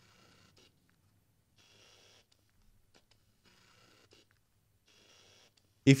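Sony 50mm f/2.8 Macro lens's autofocus motor whirring faintly in four short runs of about half a second each as the lens hunts back and forth; noisy, slow, hunting autofocus.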